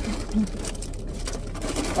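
A person's short, low closed-mouth "mm" hum, twice in the first half second, then faint crinkling of a plastic snack wrapper being handled.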